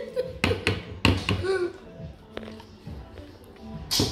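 A metal spoon knocking against a can and a mixing bowl while pumpkin is scooped out: a handful of short, sharp taps at uneven intervals.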